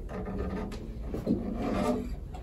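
Acoustic guitar being handled and lowered to rest, its wooden body rubbing and bumping softly, with a couple of light clicks.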